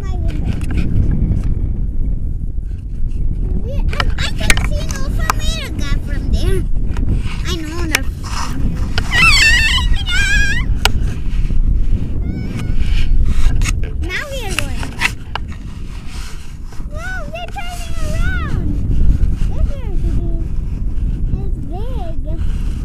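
Wind rumbling on the microphone of a camera strapped to a paraglider harness, with knocks and rustling of the harness and camera. A high, wavering voice calls out twice over it, near the middle and again later.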